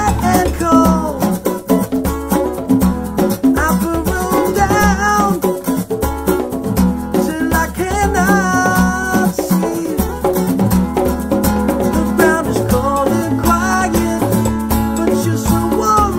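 Acoustic guitar strummed while a man sings a melody, with a pair of congas and small hand percussion playing along.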